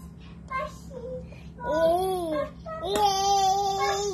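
Toddler vocalizing in a sing-song voice: a short note that rises and falls, then a long, loud held note.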